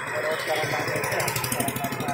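A motorcycle or scooter engine passing on the road, its rapid exhaust pulses strongest in the second half. Men's voices continue in conversation over it.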